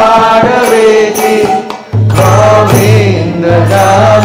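A man singing a devotional Sanskrit prayer chant into a microphone, with sustained sung notes. A low steady accompanying note comes in about halfway through and holds under the voice.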